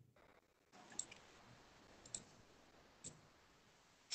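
Near silence broken by three faint clicks, about a second apart.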